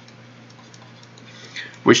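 Faint light ticks and taps of a stylus writing on a tablet screen, over a low steady hum.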